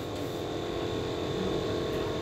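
A motor's steady drone: several held tones over a low rumble, unchanging throughout.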